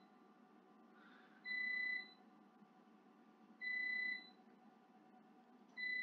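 High-pitched electronic beep sounding three times, about two seconds apart, each lasting under a second, from the antenna measuring equipment during a pattern acquisition, over a faint steady hum.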